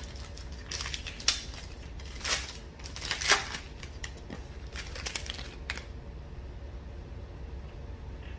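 Foil wrapper of a Panini Prizm trading-card pack crinkling and tearing as it is ripped open by hand, in a series of short crackly bursts over about five seconds, the loudest about a second in and about three seconds in.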